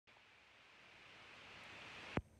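Near silence: a faint steady hiss of background noise, slowly growing a little louder.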